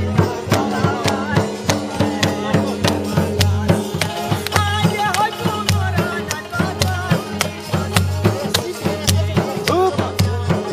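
Live Chitrali folk music: a double-headed dhol drum is beaten in a steady, fast rhythm under an electronic keyboard's held notes. A long-necked plucked Chitrali sitar plays a wavering melody on top.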